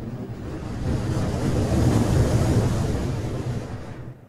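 Rumbling whoosh sound effect for a logo animation, swelling for about two seconds and then fading away.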